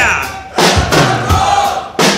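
Live rock band playing loudly, with electric guitar, bass and several hard drum hits, while the singer shouts into the microphone and the audience shouts back.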